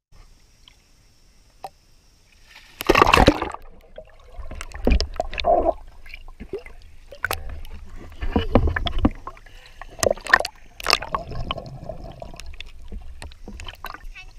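Child jumping into a swimming pool: one loud splash about three seconds in, followed by repeated splashing, sloshing and gurgling water against a GoPro sitting at the waterline, partly underwater.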